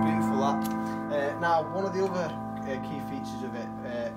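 Yamaha CLP-685 digital piano, its CFX grand piano sample layered with a choir voice, holding a chord struck just before that rings on and slowly fades.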